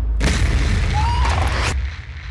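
Trailer sound design: a deep held boom with a noisy crash over it from just after the start, cutting off shortly before the end.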